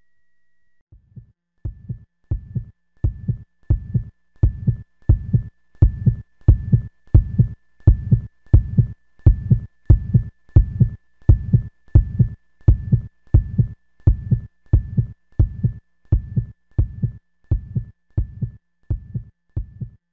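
Heartbeat sound effect: evenly spaced low thumps about one and a half times a second, fading in about a second in and tailing off near the end, with a faint thin high tone behind them.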